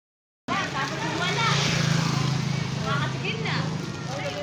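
Silence, then from about half a second in, people's voices over the steady low hum of a running vehicle engine.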